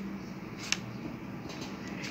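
Faint handling of a pencil compass on a notebook page: a single light click about two-thirds of a second in, over a faint steady low hum.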